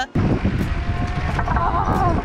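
Wind buffeting the microphone while riding a VanMoof S4 e-bike, a steady, dense rumble that begins suddenly just after the start.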